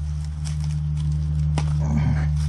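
Dandelion leaves rustling and snapping faintly a few times as the weed is gripped and pulled by hand, over a steady low hum.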